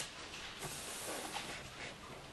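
Faint rustling of thin Bible pages being leafed through to find a passage, a few soft strokes over a steady background hiss.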